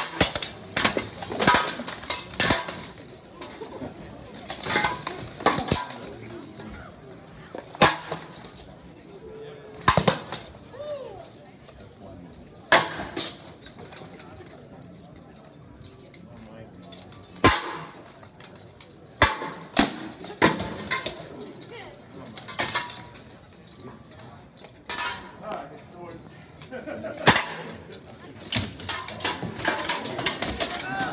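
Steel swords striking plate armour, helmets and shields in an armored combat bout: sharp metallic clanks that come irregularly, sometimes single and sometimes in quick flurries of several blows, with short lulls between exchanges.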